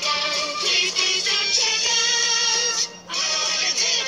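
Closing song of a children's TV show: puppet characters singing together over a musical backing, heard through a television speaker. The music breaks off briefly about three seconds in, then carries on.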